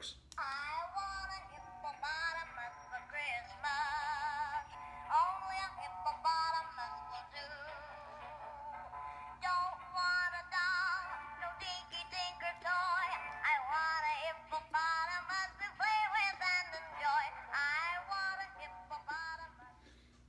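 Singing hippo figurine playing a sung Christmas song through its small built-in speaker, thin and tinny with almost no low end; the song plays through to the end, so the ornament is working.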